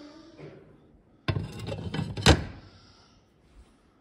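A sheet of stained glass set down on a wooden worktable: a short clatter of knocks starting about a second in, ending in one loud thunk.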